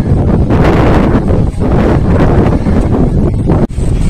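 Strong wind blowing across the microphone: a loud, gusty rumble, strongest in the low end, that breaks off for a moment near the end.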